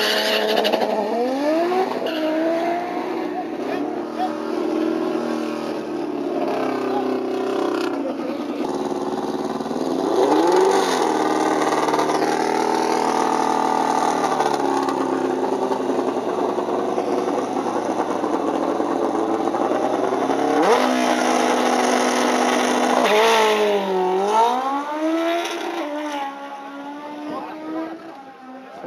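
Drag-racing car engines at the start line, revving several times with repeated rises and falls in pitch. Near the end the sound falls away as the cars run down the strip.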